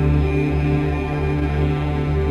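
Background music: a steady drone of sustained tones over a low pulse that swells about twice a second.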